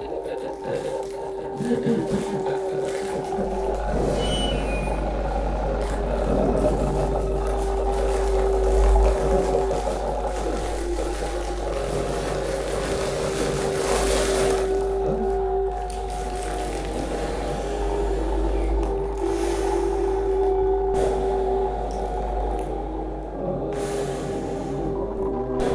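Improvised music for melodica, voice and live electronics. A steady held note comes and goes in stretches of several seconds, over a deep electronic drone that enters about four seconds in and a dense processed texture.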